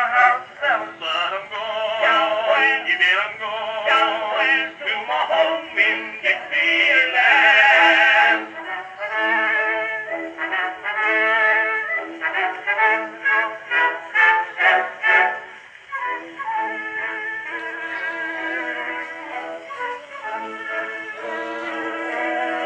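Edison Standard Phonograph playing an Edison Blue Amberol four-minute cylinder through a flowered cygnet horn: a passage of the song with no words sung. The sound is thin, with no deep bass and no high treble.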